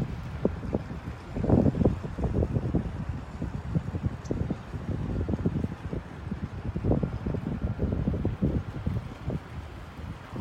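Wind buffeting the microphone in uneven gusts: a low rumble that keeps rising and falling.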